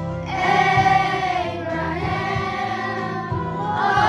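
Children's choir singing long held notes in unison over instrumental accompaniment.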